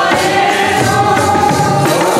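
Women singing a Sikh kirtan hymn together, with steady held accompanying tones and a few drum strokes underneath.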